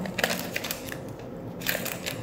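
Makeup tools being handled: short crackly scrapes and clicks, one cluster just after the start and another near the end, as a smaller precision eyeshadow brush is picked up and worked into the palette.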